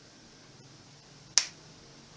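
A single short, sharp click near the end of a quiet pause, over faint room hiss.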